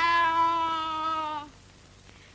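A girl imitating a cat's meow: one long, drawn-out call that rises at the start, holds, and dips slightly before stopping about a second and a half in.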